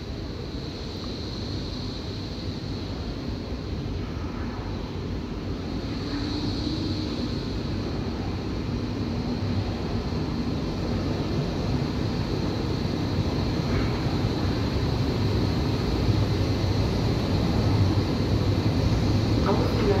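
Berlin S-Bahn class 480 electric multiple unit approaching and pulling in alongside the platform. Its running noise grows steadily louder as it nears.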